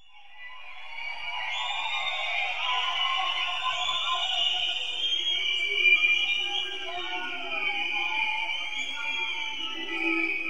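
Live concert audio from a lo-fi audience recording, fading in from silence over the first second or two: high, wavering sustained tones with slow gliding pitches, and no clear beat or vocals.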